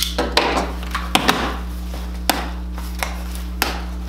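Rummaging in a cardboard shipping box: rustling of packing and contents, with a series of light, irregular knocks of cardboard and items against the box and counter.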